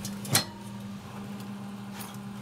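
A single sharp clack about a third of a second in, over a steady low electrical hum, as the door of a glass-door drinks cooler is shut.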